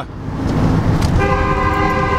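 A car horn sounds once for just under a second, starting a little over a second in, over the steady rumble of road noise inside a moving car's cabin.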